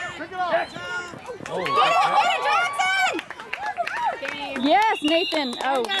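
Sideline voices calling and shouting, at times several at once, with no clear words.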